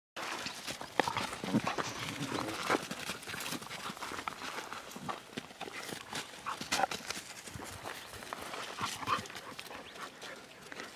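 Two canines play-fighting on dirt: irregular scuffling and pattering of paws, with short growls and yips now and then.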